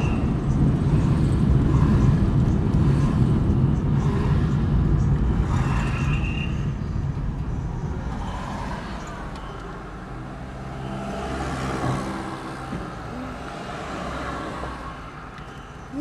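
Road traffic: a loud low rumble of cars for about the first half, falling away to a quieter steady engine hum in the second half.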